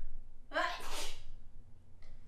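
A person sneezing once, about half a second in: a short voiced intake breaking into a noisy burst.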